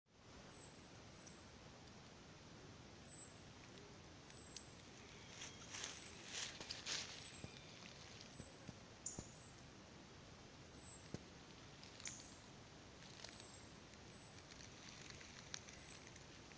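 Quiet forest: faint footsteps rustling and crackling in dry leaf litter, busiest about six seconds in, with a few scattered twig cracks. Throughout, a thin, very high descending call repeats about once a second.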